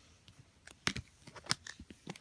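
Handling noise from clear plastic card holders being moved and touched by hand: a run of about eight light, irregular clicks and taps.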